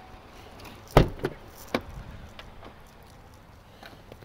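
Doors of a Chevrolet Tahoe SUV being handled: a sharp thud about a second in, then a lighter latch click shortly after, followed by a few faint ticks.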